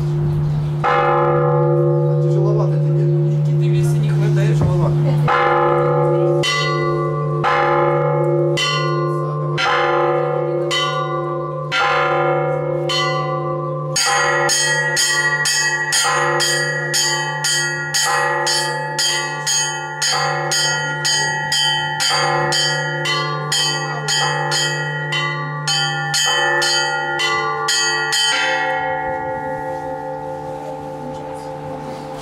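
Russian Orthodox church bells rung by hand, with ropes and a pedal, in a bell tower. A deep bell is struck every few seconds and its tone hangs on under strikes of middle bells about once a second. From about halfway the small treble bells join in a quick chime of about three strikes a second, which stops shortly before the end, leaving the bells ringing on.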